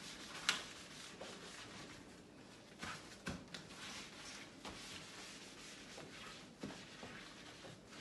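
A soapy sponge scrubbing the plastic inner liner of a fridge door: a faint, continuous rubbing broken by a few sharper strokes, the strongest about half a second in and again around three seconds.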